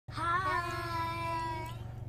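A young child's voice holding one long, high vowel-like note that rises slightly at first and fades out after about a second and a half, over a low steady hum.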